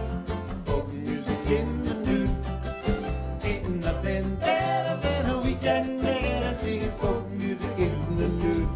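Live acoustic band playing a calypso-style folk song, with strummed acoustic guitar over a low line that steps from note to note.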